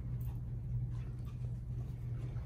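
A steady low hum, with faint light ticks and rustles of a husky moving about on its leash and harness.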